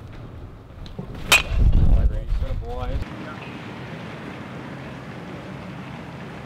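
A single sharp crack of a bat hitting a baseball in a batting cage about a second in, followed by wind rumbling on the microphone and a brief faint voice. After that comes a steady outdoor hiss.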